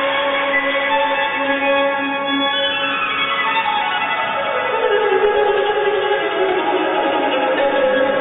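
Instrumental program music for a pairs free skate, played over the arena's sound system. Sustained tones hold steady, then sweep slowly downward in a long gliding slide about three seconds in, settling onto a lower held note.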